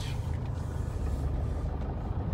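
Toyota Etios diesel's engine running steadily, a low rumble heard from inside the car's cabin.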